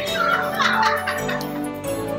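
Several people laughing in quick bursts over light background music.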